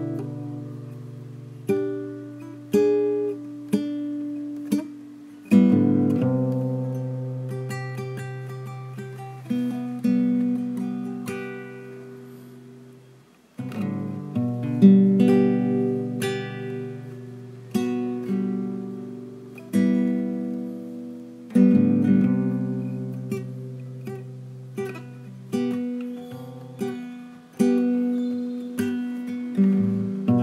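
Acoustic guitar music: slow plucked notes and chords, each ringing and then fading away. The sound dies almost to nothing about halfway through before the playing picks up again.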